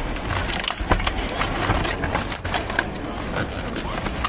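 Plastic food containers and cardboard rustling and clattering as a gloved hand rummages through a bin of them, a dense run of small knocks and crinkles.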